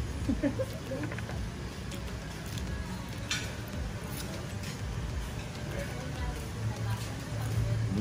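Crispy-skinned deep-fried pork knuckle crunching as it is bitten, one sharp crunch about three seconds in, over a steady low hum. A short chuckle trails off at the start.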